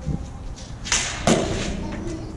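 Combat lightsabers swinging and clashing: two sharp clashes a little under half a second apart, about a second in, each ringing on briefly.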